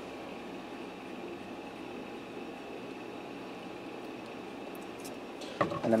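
Steady room noise: an even background hiss and hum with a faint high tone, with no distinct pouring or clinking. A man's voice begins near the end.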